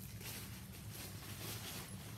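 Faint rustling of tissue paper and the fabric bag as tissue is tucked back inside a backpack, over a low steady room hum.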